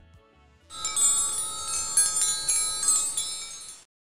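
Tinkling chimes: many high ringing tones struck in quick succession, starting just under a second in and cutting off shortly before the end, as a logo sting sound effect.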